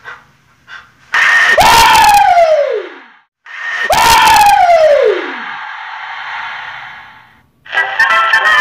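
Horror-film jump-scare sound: two loud screeching blasts about three seconds apart. Each hits suddenly, and a scream-like pitch then falls away. A rushing noise fades out after the second blast.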